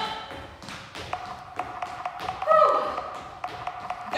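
Athletic shoes landing in repeated light taps on a hardwood studio floor during quick high-knee and jumping footwork. A short falling voice-like sound comes about halfway through and is the loudest moment.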